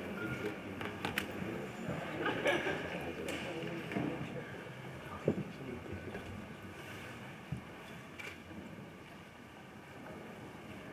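Indistinct murmur of voices and rustling in a large hall, with a few sharp clicks and knocks from people and instruments settling; the noise slowly dies down toward the end.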